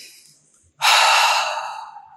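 A woman's slow, deep breath. A soft breath in fades out early, then a much louder breath out starts just under a second in and trails off.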